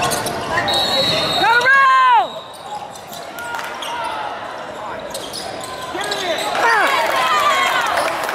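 Indoor basketball game sounds in a large gym: a ball bouncing on the hardwood floor under loud calls from the players and bench, one drawn-out shout rising and falling in pitch about a second and a half in and more shouting near the end.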